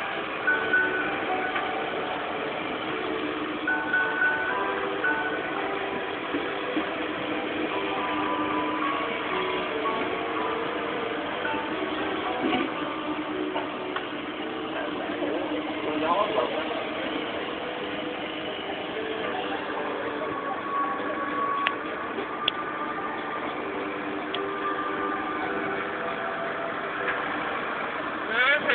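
Busy background ambience: indistinct distant voices over a steady hum of traffic or engines, with sustained musical tones coming and going.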